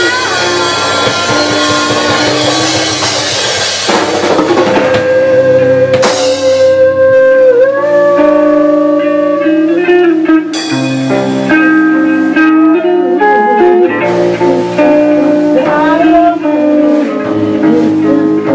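A rock band playing live: electric guitar with long sustained and bent notes, electric bass and a drum kit with cymbal crashes.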